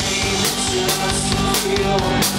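Live rock band playing, a drum kit with bass drum, snare and cymbals beating steadily under sustained guitar and bass.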